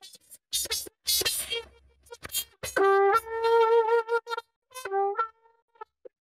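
Trumpet playing a short phrase, heard over a video call. A few short, ragged notes come first, then clear held notes in the second half. The sound cuts in and out between notes as the call's noise suppression gates the horn.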